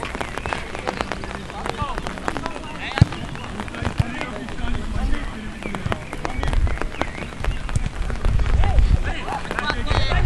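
Sideline sound of an amateur football game: players' shouts and calls, scattered sharp knocks of the ball being kicked, and wind buffeting the microphone with a low rumble, loudest in the second half.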